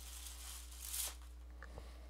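Stiff cross-stitch fabric rustling as it is handled, swelling about a second in, then a light knock near the end as a plastic embroidery hoop is picked up.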